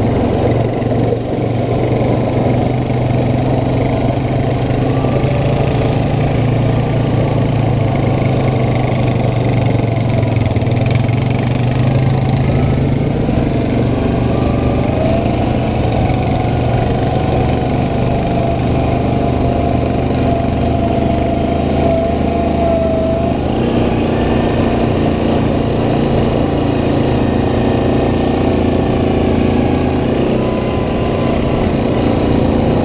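Yamaha Kodiak 700 ATV's single-cylinder engine running steadily while the quad is ridden along a dirt trail. A higher whine rises about halfway through and holds, then the engine note shifts near the end.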